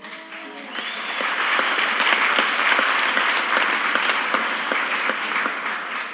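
Audience applauding: many hands clapping, swelling up within the first second and then holding steady.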